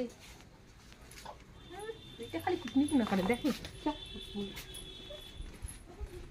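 A baby softly whimpering and fussing in short, broken cries.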